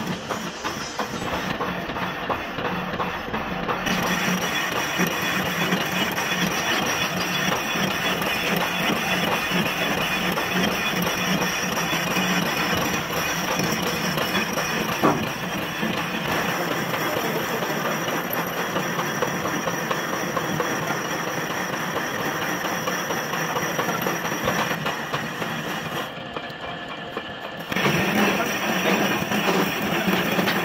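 Metal lathe turning a pillow block housing: the spindle and gearing run steadily under the continuous scraping of the cutting tool on the metal. The sound drops off for about a second and a half near the end, then returns louder.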